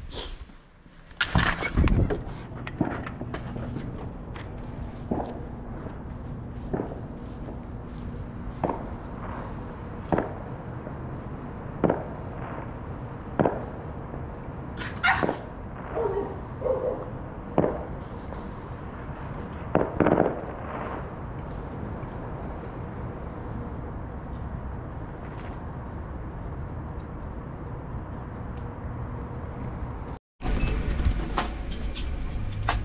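Fireworks going off outside, single sharp bangs every one to two seconds that stop about twenty seconds in, over a steady low hum.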